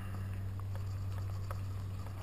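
Low steady hum with a faint fading whine and a couple of light ticks as the Blade 180CFX helicopter's main rotor coasts down on the ground; its flight battery is dead.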